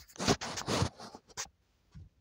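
Phone handling noise: fingers and palm rubbing over the phone's microphone in short, uneven noisy bursts that stop about one and a half seconds in.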